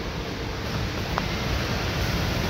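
Steady rushing background noise with a single faint click about a second in, as the plastic hatch trim cover is handled and pressed into place.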